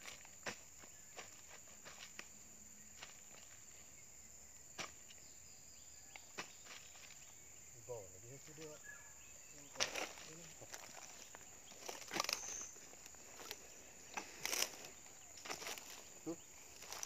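Hoe digging in soil and palm litter: scattered soft knocks and scrapes, more frequent and louder in the second half, over a steady high-pitched hum.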